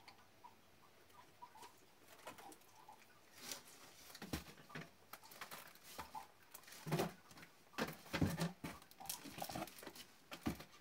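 Packaged items in plastic wrappers rustling and knocking against a corrugated cardboard box as they are fitted into it by hand: irregular rustles, clicks and light thumps, busier and louder in the second half.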